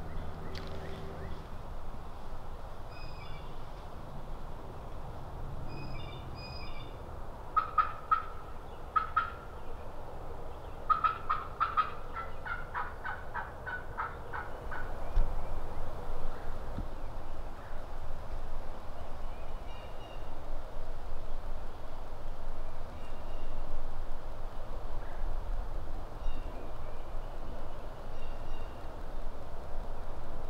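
Turkey yelping on a hunter's call: a short run of loud yelps about eight seconds in, then a longer string of about fifteen yelps that drops in pitch toward the end, calling to draw a gobble. Small birds chirp faintly now and then.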